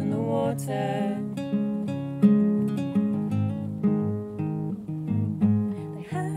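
Acoustic guitar playing an instrumental passage of plucked notes and chords between verses. A sung line ends in the first second.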